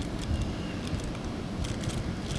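Steady outdoor background noise, a low rumble with a few faint clicks.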